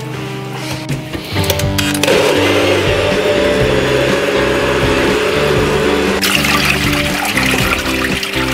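A NutriBullet personal blender runs for about four seconds, starting about two seconds in, puréeing chopped ingredients in a soy-sauce marinade. Near the end a brighter hiss of running water takes over, and background music plays throughout.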